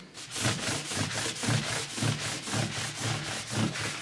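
Hand rubbing back and forth over a wooden workbench top in quick, even strokes, about three a second.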